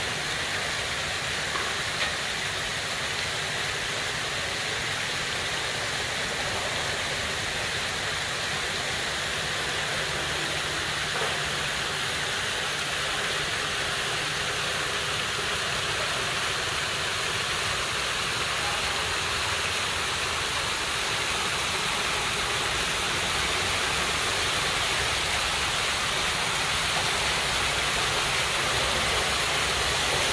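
Water jets of a large public fountain splashing into the basin: a steady rushing hiss that grows a little louder toward the end.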